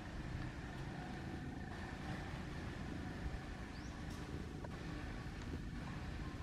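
Steady low outdoor rumble, like distant traffic, with a short high rising squeak about four seconds in.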